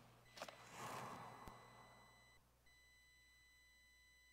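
Near silence: quiet church room tone with a soft rustle that swells and fades in the first two seconds, a few faint clicks, and a faint steady high-pitched electronic whine.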